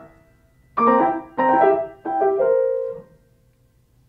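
Upright piano playing three chords of a broken-up C7 harmony, the last held and ringing out about three seconds in. The unresolved dominant seventh leaves the music hanging before the return to F major.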